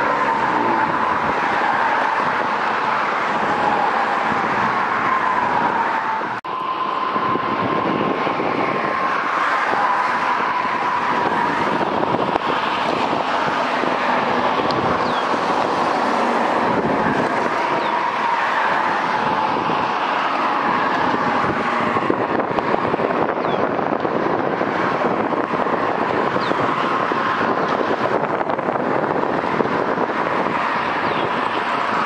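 Steady high-pitched squeal of freight-car wheels on the rails, wavering a little in pitch, over a continuous rush of rolling noise. There is a brief drop about six seconds in.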